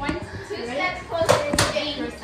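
Girls' voices, with two sharp knocks close together about a second and a half in.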